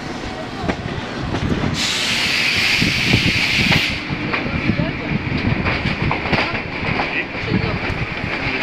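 Passenger train coaches rolling slowly, wheels knocking irregularly over the rails, with a loud burst of air hiss lasting about two seconds, starting and stopping abruptly.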